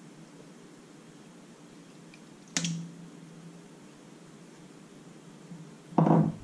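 Quiet room tone with one sharp clink about two and a half seconds in, followed by a low ring lasting about a second: a small glass bowl knocking against a stainless steel mixing bowl as softened butter is tipped in.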